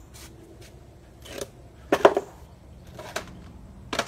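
Small objects being handled and set down: a few short rustles and clacks, the loudest about two seconds in.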